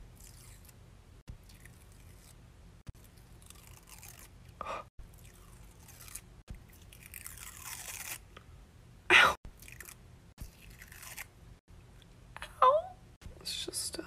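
Rigid collodion film being peeled off the skin, crackling and crinkling on and off, with a louder sharp sound about nine seconds in. A brief vocal sound comes near the end.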